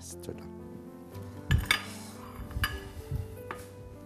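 Dishes and utensils knocking and clinking on a kitchen counter, with a loud clatter about a second and a half in and a few lighter clinks after, over soft background music.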